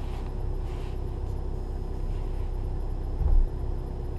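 2012 VW Jetta's turbo-diesel engine idling steadily, heard from inside the cabin, with a single low thump a little past three seconds in as the DSG dual-clutch gearbox works through its basic-settings adaptation.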